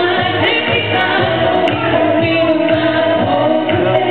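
A female vocalist singing a pop song into a microphone over instrumental accompaniment, through a sound system, in a dull, low-fidelity recording.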